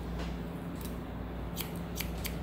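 Hair-cutting scissors snipping through a child's straight hair, a few short snips about half a second apart, over a steady low hum.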